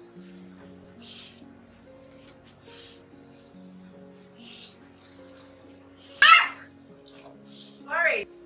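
Bulldog puppy giving a loud, high squeal about six seconds in and a second, falling yelp at the very end, over steady background music.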